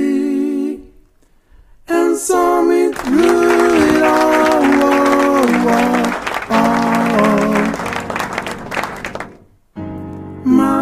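A small group singing a slow gospel song in harmony, holding long chords that step down in pitch. The singing breaks off briefly about a second in and stops just before the end.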